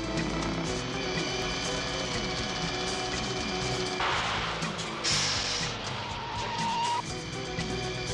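Action soundtrack music with a car's engine-and-rush effect laid over it as the car accelerates hard; a burst of rushing noise comes in about halfway through and lasts about two seconds.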